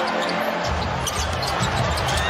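Basketball arena crowd noise during live play, with a basketball bouncing on the hardwood court.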